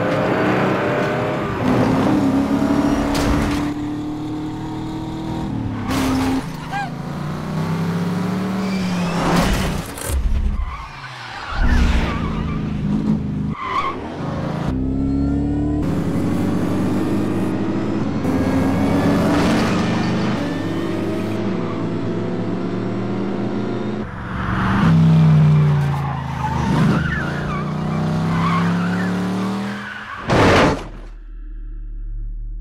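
Car chase between a Ford Mustang GT 5.0 and a Chrysler 300C, two V8 cars, revved hard with the engine note climbing and dropping again and again through gear changes. Tires skid and squeal, and there are several sudden sharp knocks.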